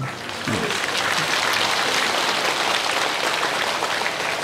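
Large audience applauding: steady, dense clapping that sets in about half a second in and carries on evenly.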